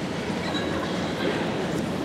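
Steady background noise of a darkened theatre hall: a low rumble with faint, indistinct voices murmuring.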